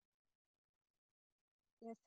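Near silence: the audio gate of an online call is closed, with a faint spoken "yes" just before the end.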